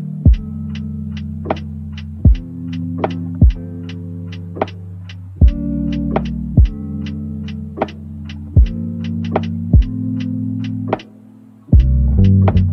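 Chill lofi hip-hop instrumental: warm sustained bass and keyboard chords under a steady beat of soft kick drums and crisp percussion ticks. Near the end the music drops out for a moment, then comes back in with a heavy bass hit.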